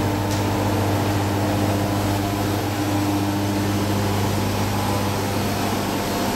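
A steady low hum with a stack of even overtones over a constant hiss, unchanging throughout, like a ventilation unit or other running machinery.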